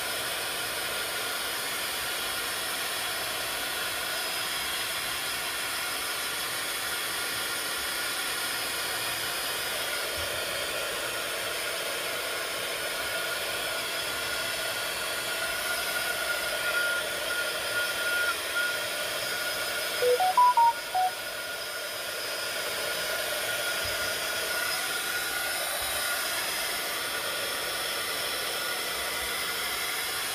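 A handheld craft heat tool running with a steady blowing hiss, drying freshly stamped thin ink lines on paper. About two-thirds of the way through, a short chime of a few quick notes sounds over it.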